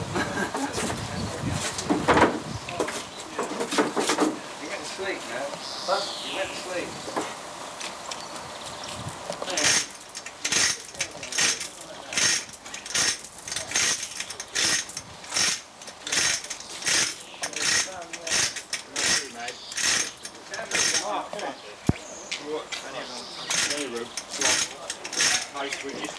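Even, rapid metallic clicking, about two strokes a second for over ten seconds in the middle, from the chain hoist holding the engine as it is worked into the engine bay, with low voices around it.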